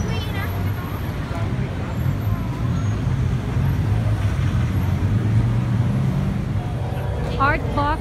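Steady road traffic rumble, with a vehicle's engine hum swelling in the middle and then fading. Brief snatches of people's voices come just after the start and near the end.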